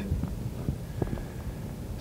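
A pause in a man's speech: the low steady hum and faint hiss of an archival recording, with a few faint ticks.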